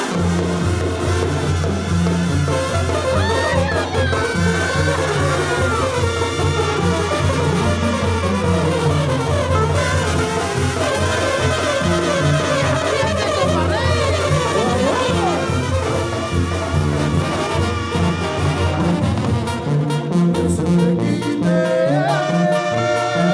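Live Mexican banda brass section, with trumpets and trombones playing an instrumental passage over a steady tuba bass line.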